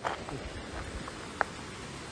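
Faint steady outdoor night background noise, broken about one and a half seconds in by one short, sharp sound that is heard as an unexplained noise starting up again.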